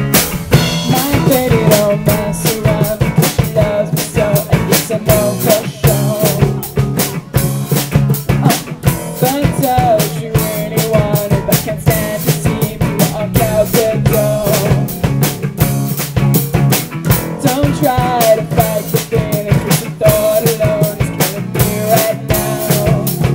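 A live rock band playing: a steady drum-kit beat with electric guitar and bass guitar, and a wavering melody line above them.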